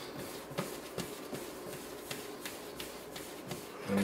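Hands rounding a ball of yeast bread dough on the counter: faint soft rubbing with a few small light taps.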